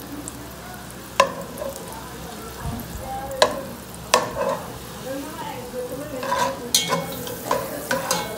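Butter melting and sizzling in an enamel-coated pot while a metal spatula stirs it, scraping and knocking sharply against the pot three times.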